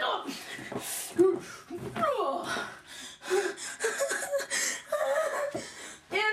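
A person laughing and gasping, with wordless voice sounds.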